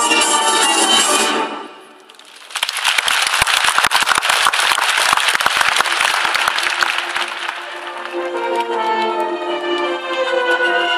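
Orchestral music ends about a second in. After a short lull, an audience applauds with a dense patter of clapping, which fades as the orchestral music starts again near the end.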